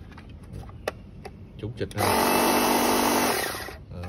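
Black+Decker 20V cordless pressure washer's motor and pump switched on about two seconds in, running loud and steady with a whine for about a second and a half, then winding down as it is switched off.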